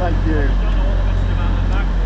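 A steady low hum from a stationary LNER Azuma train standing at the platform, with brief snatches of voices over it.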